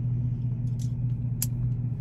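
Steady low hum of an idling pickup truck heard from inside the cabin, with a couple of faint short clicks, the sharpest about one and a half seconds in, as a briar pipe is relit with a lighter.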